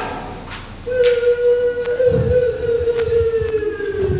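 A man's long drawn-out call held on one high note, starting about a second in and sagging slowly in pitch, with a couple of low thuds beneath it.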